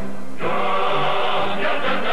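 TV advertising jingle: music with a group of voices singing together. A fuller chord swells in about half a second in.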